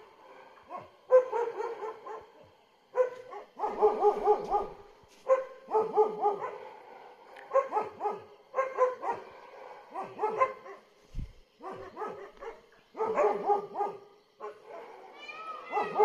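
A dog barking in quick bouts of several barks, about six bouts with short pauses between.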